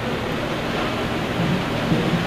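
Steady rushing background noise with no speech in it.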